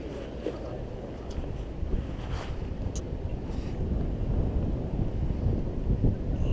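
Wind on the microphone: a low rumble that grows gradually louder, with a faint click about three seconds in.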